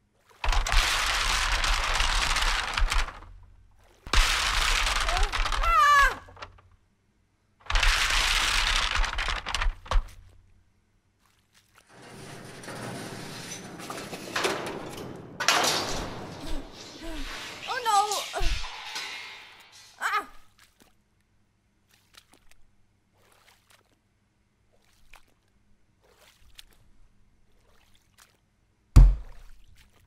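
Cartoon shark-chase sound: three loud bursts of screaming mixed with crashing, each a few seconds long, then a quieter stretch of shorter cries and noise. One sharp, heavy thud comes near the end.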